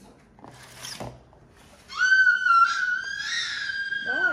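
A dog whining: one long, high-pitched whine starting about halfway through, held steady for about two seconds and falling off at the end. A short rustle of paper or card comes about a second in.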